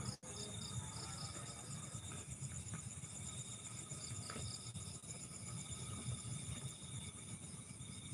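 Crickets and other night insects chirring steadily in several high, unbroken tones, with a low rumble underneath.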